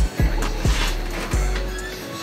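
Background music with deep bass: a few low, booming kicks that drop in pitch, with a sustained bass tone under them.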